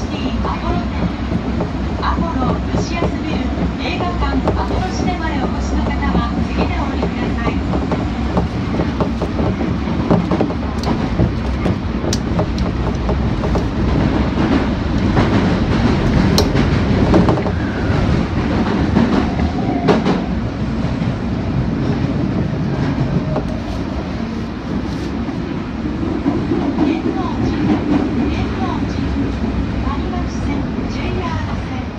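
Osaka Metro Midōsuji Line subway train running through a tunnel, heard from inside the car: a loud, steady rumble of wheels on rail. A few sharp clicks stand out around the middle.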